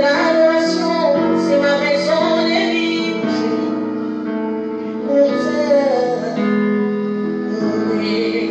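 A woman singing a worship song into a microphone with a wavering, sustained line, over instrumental backing of held chords.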